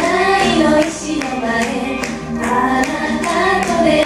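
Four women singing together into microphones over amplified backing music with a steady beat.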